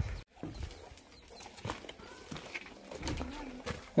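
Quiet outdoor background with a faint bird call, a short low coo, about three seconds in.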